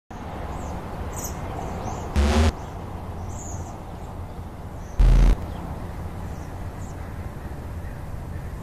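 Outdoor ambience: a steady background hiss with faint bird chirps, broken twice by a loud, short thump, about two seconds in and again about five seconds in.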